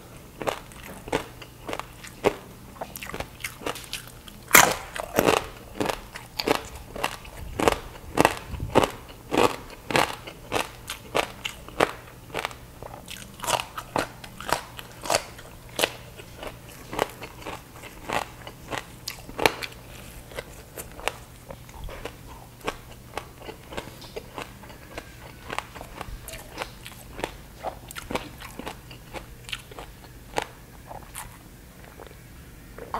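Close-miked chewing of crispy baked pork belly skin: a fast, uneven run of sharp crunches and crackles, thickest through the first two-thirds and thinning toward the end.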